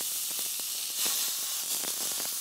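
Ground beef sizzling in a hot nonstick skillet as it starts to brown: a steady hiss with many small crackles.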